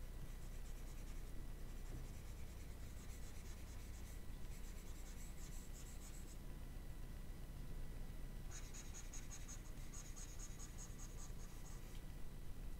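Pen stylus scratching across a graphics tablet in quick back-and-forth strokes, in two spells: one from about three to six seconds in, the other from about eight and a half to eleven and a half seconds in. A faint steady low hum lies underneath.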